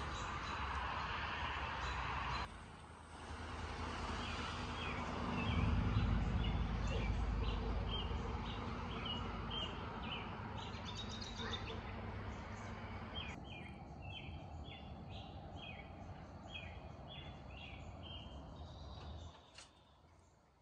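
Outdoor ambience with birds chirping again and again over a steady background hiss. A low rumble swells and fades a few seconds in.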